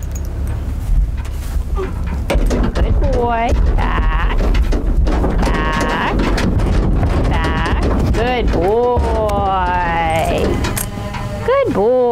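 A horse whinnying several times, wavering calls, the longest one near the end falling in pitch. Hooves knock on the trailer floor as it backs off, over a steady low rumble.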